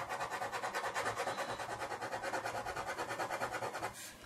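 Black ballpoint pen scratching on paper in rapid back-and-forth hatching strokes, a fast, even rhythm of about a dozen strokes a second.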